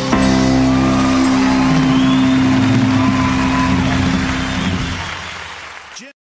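A live band holds one long final chord, which fades out near the end.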